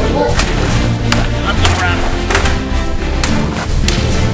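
Music playing, with a steady low bass and sharp percussive hits recurring about every two-thirds of a second.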